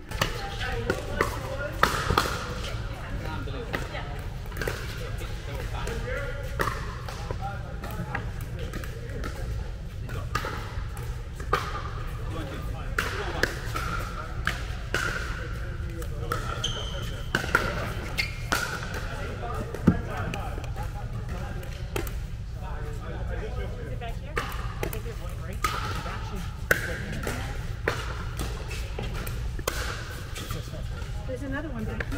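Pickleball rally: paddles pop against a plastic pickleball, and the ball bounces on the hard court, in irregular runs of sharp hits. A steady low hum runs underneath.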